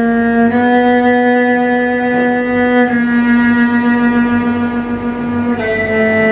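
Cello bowed in long held notes, the pitch moving by a small step three times: up about half a second in, down near three seconds, and down again near the end.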